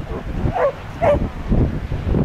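A dog barks twice, about half a second apart, over low wind rumble on the microphone.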